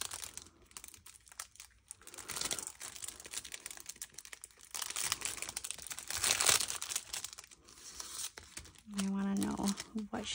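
Clear plastic sleeve crinkling in irregular bursts as fingers work inside it to pull out a paper tag.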